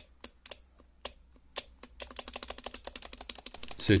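HHKB spacebar being pressed, clacking and rattling: a few separate presses, then a rapid run of clacks from about halfway. The rattle is from the spacebar's unlubricated metal stabilizer wire knocking against its plastic housings.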